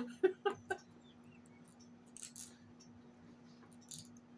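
A short run of laughter in the first second, then a steady low hum with a brief scrape of a fork against a plate about two seconds in and a sharp click near the end.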